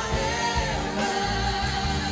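Live worship song: many voices singing together over instrumental accompaniment with a steady bass line.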